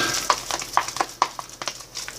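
A spoon stirring thick, dough-like fruit fly culture medium (mashed potato flakes mixed with hot water) in a plastic tub, giving an irregular string of short clicks and taps against the plastic.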